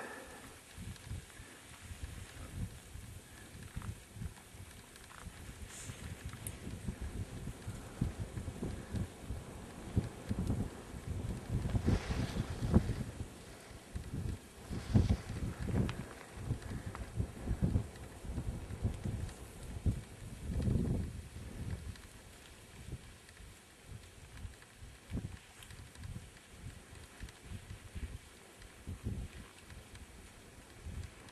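Wind buffeting the camera microphone in uneven low rumbling gusts, stronger through the middle of the stretch.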